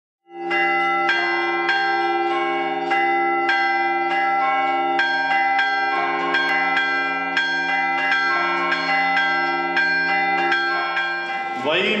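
Church bells ringing, a steady run of strikes about every 0.6 s over long-held, overlapping ringing tones.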